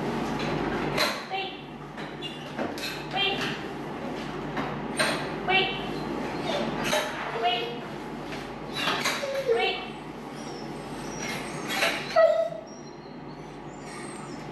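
Wire doors on plastic dog crates clanking and rattling as their latches are worked, while crated dogs give short yips and whines, one whine falling in pitch.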